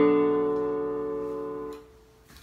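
Portable electronic keyboard with a piano voice: a final chord held and slowly fading, then cut off near the end as the keys are released.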